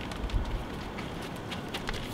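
Faint rustling and scattered light clicks from a shimpaku juniper in a plastic nursery pot being handled and turned over to knock the root ball out.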